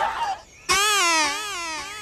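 A high, drawn-out wavering wail, a single voice-like cry whose pitch slides down and up. It starts just under a second in and lasts just over a second.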